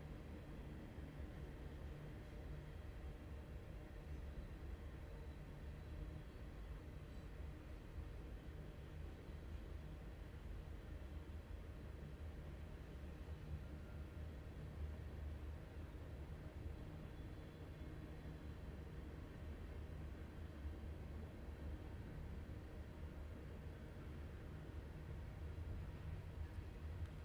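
Quiet, steady low rumble of outdoor background noise, with faint thin steady tones higher up and no distinct events.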